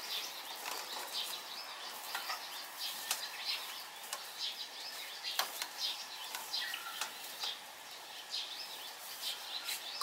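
Small wild birds chirping repeatedly in short high calls, with a few faint clicks in between.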